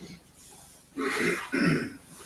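A person clearing their throat: two short, rough bursts in quick succession about a second in.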